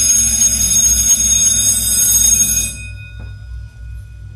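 A loud, bell-like ringing sound effect with heavy bass, played over the PA speakers. It drops off sharply a little over halfway through, leaving a fainter held high note and a low hum.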